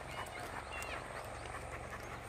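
Tibetan mastiff panting as it walks, with faint irregular footsteps on the road and a brief high chirp near the middle.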